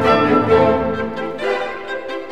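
Classical orchestral music, with violins carrying the line over lower strings. The bass drops away near the end, leaving the violins.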